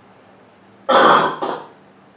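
A man clearing his throat: one short, harsh sound in two quick bursts about a second in, loud against a quiet room.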